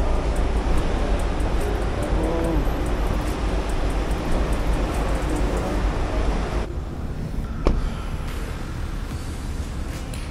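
Steady low rumble of traffic and wind under a concrete parking deck as cars pass in the pickup lane. About two-thirds of the way through it gives way to a quieter background, broken by a single sharp click.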